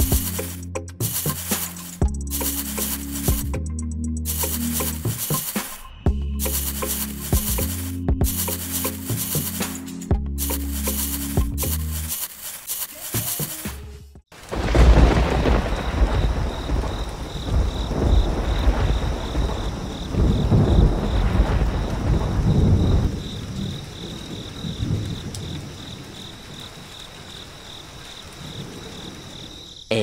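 Background music for the first half, then from about halfway a thunderstorm sound effect: rain with rolling thunder, loudest soon after it starts and again a few seconds later, then easing off.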